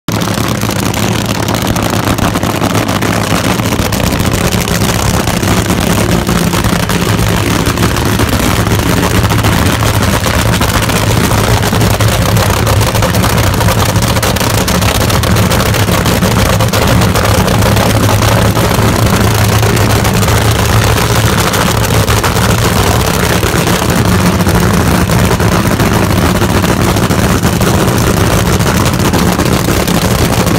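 Nitro funny car's supercharged V8 idling steadily, a loud, deep and unchanging run note.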